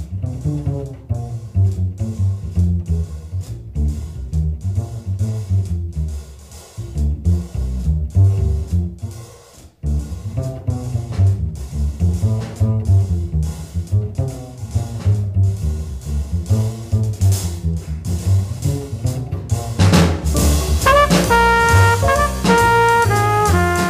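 Small-group jazz: an upright bass plays a plucked solo line over drum-kit cymbals and drums, with a brief drop-out about ten seconds in. Trumpet and tenor saxophone come in together near the end.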